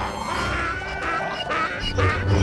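Film soundtrack music with short, wavering pitched sounds over a steady low rumble.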